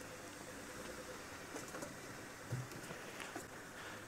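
Open game-drive vehicle creeping slowly through bush: a faint, steady engine and driving noise with a few light ticks and rustles.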